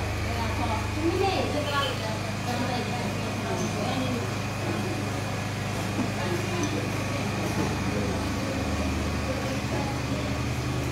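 Indistinct voices of people talking in the room over a steady low hum.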